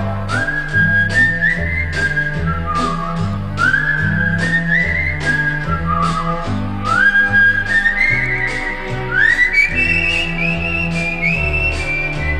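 A whistled melody over a pop band backing of bass and steady percussion: the instrumental whistling break between sung verses. Each whistled phrase slides up into its first note, and the line climbs higher toward the end.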